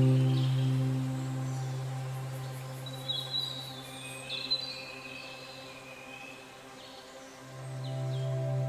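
Soft ambient background music: a held low chord that slowly fades away, with a few short bird chirps in the middle, and a new chord swelling in near the end.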